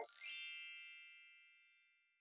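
A single bright, bell-like ding that rings out and fades away over about a second and a half. It is an added sound effect, clean and with no room noise behind it.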